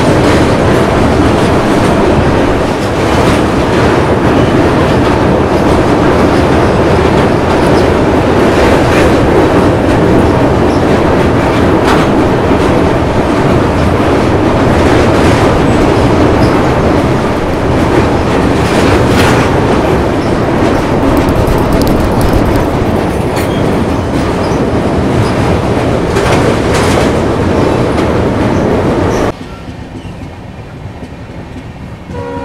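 A passenger train's wheels running over a steel truss railway bridge, heard at an open coach door: a loud, steady rumble with occasional sharp clacks. It cuts off abruptly just before the end.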